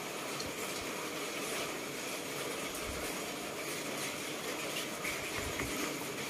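Steady background noise, an even hiss with a few faint soft knocks.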